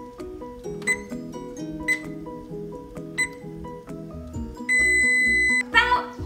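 Electronic beeps from a kitchen appliance's touch control panel over background music: three short key beeps about a second apart, then one long steady beep of about a second near the end.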